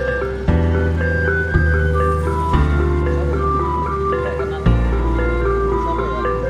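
Background music: a light melody of held notes over a bass line that changes note every second or two.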